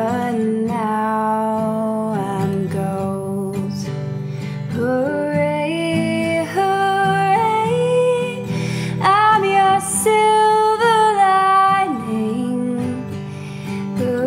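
A woman singing with acoustic guitar accompaniment, holding long notes that step and slide in pitch.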